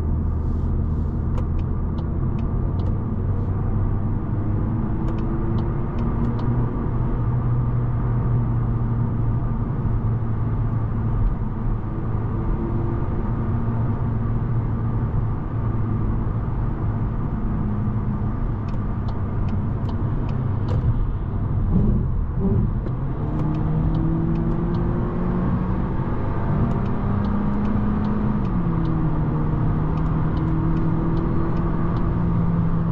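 Volkswagen Golf's 1.5 TSI four-cylinder petrol engine and tyre noise heard from inside the cabin at motorway speed. The engine note climbs under acceleration from about two-thirds of the way in, then drops suddenly near the end as the 7-speed automatic shifts up.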